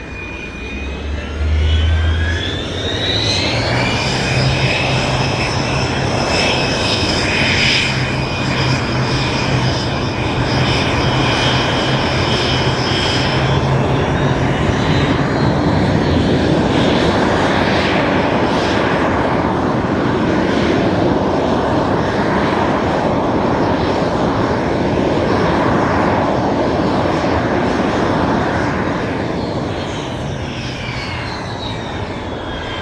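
Aero L-39 Albatros's single turbofan jet engine running at taxi power. Its whine climbs in pitch a couple of seconds in and holds steady, then settles lower about halfway through as the jet stands lined up on the runway before take-off, and eases off again at the very end.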